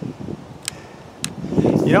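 Wind buffeting the microphone as a low, uneven rumble, with two faint light clicks about half a second apart near the middle, before a man's voice comes in at the end.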